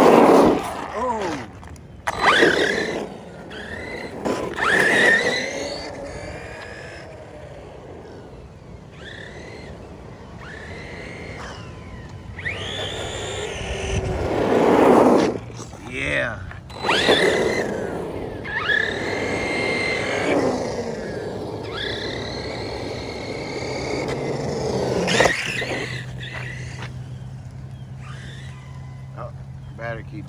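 Redcat Kaiju RC monster truck's brushless electric motor whining up and down in pitch through repeated bursts of throttle as the truck drifts on wet asphalt, with the loudest surges near the start and about halfway through.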